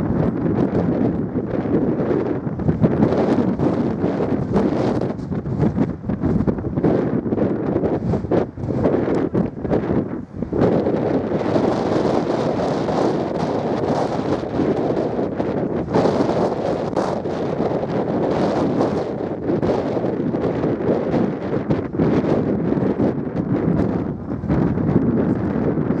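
Wind buffeting the camera microphone: a loud, rumbling rush with irregular gusts throughout.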